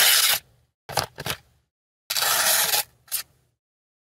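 Sharp folding-knife blade slicing through a sheet of paper in several quick hissing cuts, the longest about two seconds in. These are test cuts on an edge freshly stropped on cardboard, which parts the paper cleanly.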